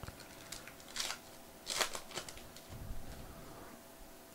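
Foil wrapper of a Topps Chrome trading-card pack torn open and crinkled by hand: a handful of short, faint crackles and rustles over the first three seconds, then cards slid out of the pack.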